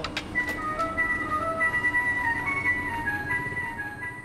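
Coin-operated digital weighing scale playing its simple electronic tune of single beeping notes, stepping up and down in pitch, while it weighs before showing the reading.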